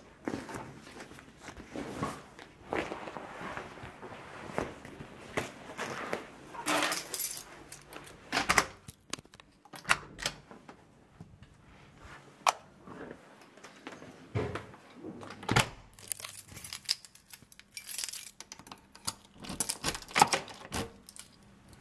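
Irregular handling sounds: keys jangling among scattered clicks, knocks and rustles, with a metal lever door handle being worked.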